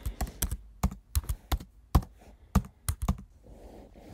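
Typing on a computer keyboard: a quick, irregular run of about fifteen key clicks that thins out near the end.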